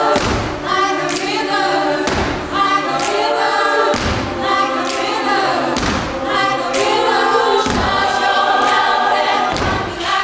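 Mixed-voice a cappella group singing in close harmony, with a deep thump on the beat about every two seconds.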